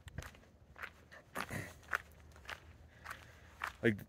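A person's footsteps at a walking pace, a short step sound roughly every half second, with a spoken word near the end.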